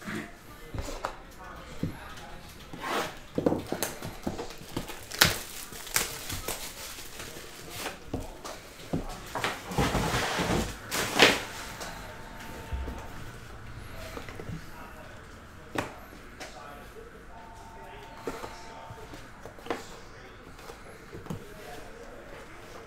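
Plastic shrink wrap crinkling and tearing as it is stripped off a sealed trading-card box, with sharp crackles and a louder rustling burst about ten seconds in. Then quieter cardboard handling as the box lid is lifted off.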